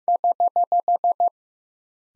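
Morse code sidetone at about 700 Hz sending eight quick, even dits, the error (correction) prosign, at 15 words per minute.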